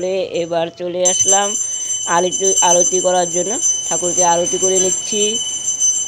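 Brass hand bell (puja ghanta) rung continuously during aarti, its bright high ring starting about a second in and carrying on steadily.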